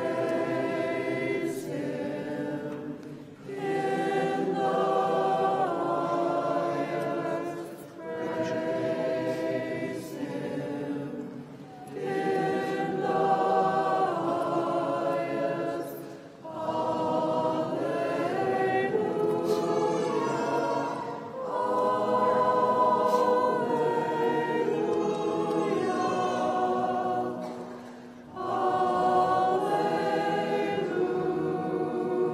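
A group of voices singing Byzantine liturgical chant without accompaniment, in phrases of a few seconds each with short breaks for breath.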